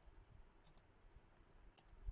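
Computer keyboard keys being typed, a handful of faint, unevenly spaced keystroke clicks.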